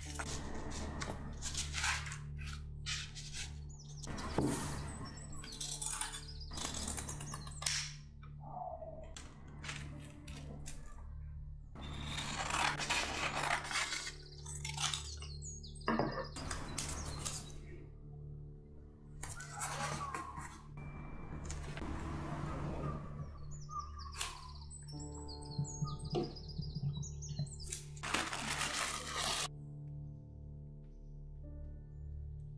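Sheets of paper (a printed pattern and carbon transfer paper) and linen fabric rustling and crinkling in short bursts as they are handled and laid out, over soft background music with occasional bird-like chirps.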